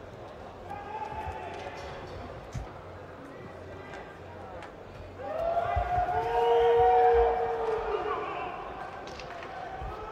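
Voices calling out in a large hall, with several long, drawn-out shouts overlapping and loudest about halfway through, over scattered low thumps.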